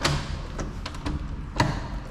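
Two sharp knocks from a stuck door being worked at to get it open. The first comes right at the start and is the louder; the second comes about a second and a half later.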